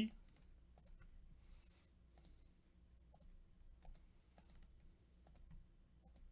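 Faint, scattered clicks of a computer mouse and keyboard, roughly one every half second to second.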